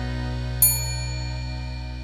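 A bright, bell-like ding sound effect strikes about half a second in and rings out, over a held music chord that slowly fades.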